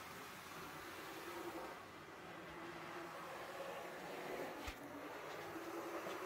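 Faint, steady buzzing whir of an HO-scale dual-motor GG1 model locomotive running along the track, with a single click near the end.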